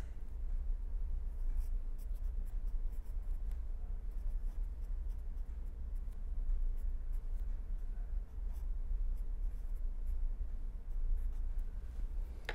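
Pen writing on paper, a string of faint irregular scratching strokes as an equation is written out, over a steady low hum.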